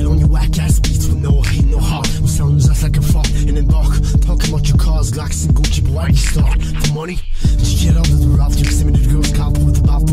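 Hip hop track: rapping over a beat with steady bass notes and regular drum hits. The beat briefly drops out about seven seconds in.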